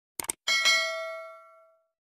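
Subscribe-button animation sound effect: a quick double mouse click, then a bright bell ding that rings out and fades away over about a second.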